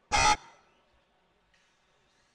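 A single short electronic buzzer tone, like a horn, lasting about a quarter of a second right at the start. It is typical of the race timing system's buzzer.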